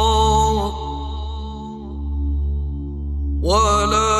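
A solo voice reciting the Quran in a melodic chanted style. It holds a long note that ends under a second in, and a new phrase starts with a rising note about three and a half seconds in, over a steady low hum.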